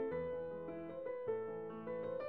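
Background piano music: a gentle melody over held bass notes.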